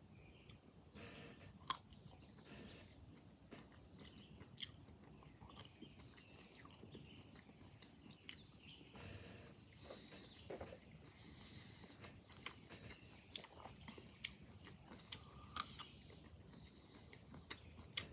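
Faint chewing of an almond-stuffed green olive, with scattered short sharp clicks throughout.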